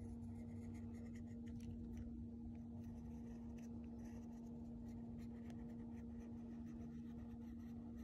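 Faint, irregular scratching of a fine-tipped pen on tracing paper as a design is drawn, over a steady low hum.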